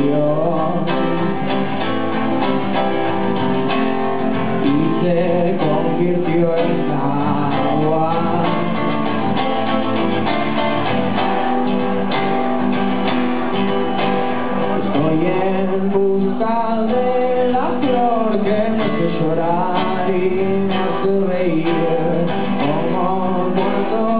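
Acoustic guitar played steadily with a man's voice singing over it in a live solo performance.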